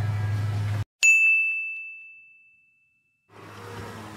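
A single clear ding, a bell-like sound effect added in the edit, struck about a second in and fading away over about a second and a half, set between stretches of dead silence. Before it there is low room hum, and room tone comes back near the end.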